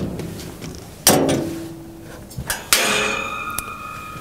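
Metal clanks from a Komatsu WA600-8 wheel loader's sheet-metal side compartment door being unlatched and swung open. There is one sharp clank about a second in, then a second, higher clank about a second and a half later, each ringing briefly. A light click comes near the end.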